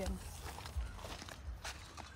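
Soft footsteps of a person walking, a few unhurried steps, following the end of a woman's sentence.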